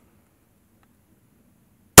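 Near silence, then one loud shot from a Springfield Armory Hellcat 9 mm micro-compact pistol at the very end.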